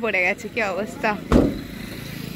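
A single heavy thump about a second and a half in, after which a car engine idles with a low, steady hum.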